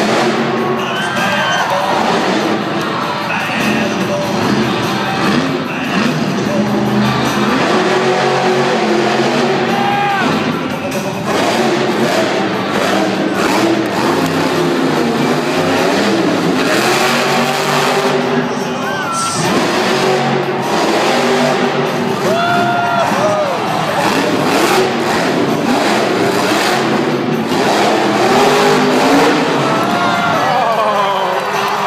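Grave Digger monster truck's supercharged V8 revving through a freestyle run in an indoor arena, mixed with loud PA music and crowd noise.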